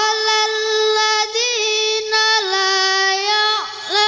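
A boy's voice chanting Quranic recitation (tilawah) into a microphone, in long held notes with ornamented turns. Near the end the voice glides down and pauses briefly before the next phrase.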